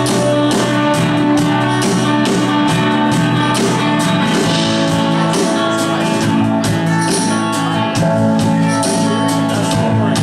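Live band playing an instrumental passage between sung lines: guitar chords over a steady percussion beat.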